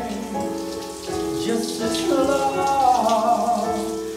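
A man singing long, sliding held notes in the shower, over the steady hiss of running shower water.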